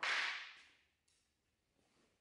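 A long white trim strip hitting or being laid down on a concrete floor: one sharp clatter right at the start that fades out within about a second.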